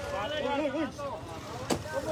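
Voices talking in the background over low street noise, with one sharp crack near the end.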